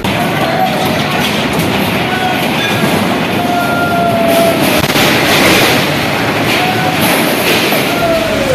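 Loud, steady roar of a flooded river in spate, its water rushing and spraying against a riverside building. A few faint, thin, drawn-out high tones sound over the roar.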